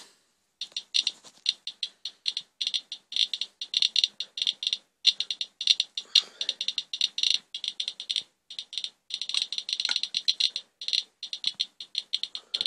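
Radiation Alert Inspector EXP+ Geiger counter clicking rapidly and irregularly as its probe reads a swipe of fresh rainwater wiped off a car. The count runs far above the usual background, which the owner takes for radioactive fallout in the rain.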